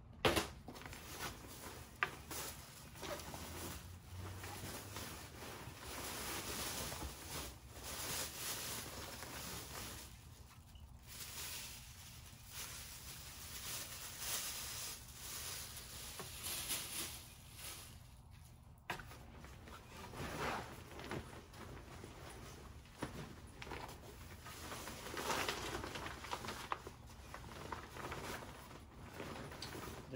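Rustling and shuffling of a quilted fabric cargo liner and its plastic packaging being handled and unfolded, with a couple of sharp knocks in the first two seconds.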